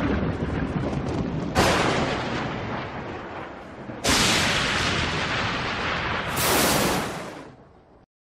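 Thunder sound effects: a rumble broken by three crashes a couple of seconds apart, each hitting suddenly and rolling away, the last fading out near the end.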